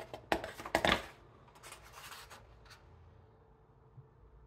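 Paper pages of a large, heavy book being turned by hand: a couple of sharp paper snaps and rustles in the first second, then a softer rustle as the page settles.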